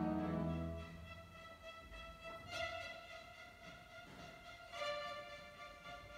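A soft orchestral passage played live: low string notes die away about a second in, then violins come in quietly on high held notes, twice, about two and a half and about five seconds in.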